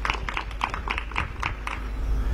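Scattered hand clapping from a small audience: a quick, uneven run of separate claps while the speaker pauses, over a steady low hum.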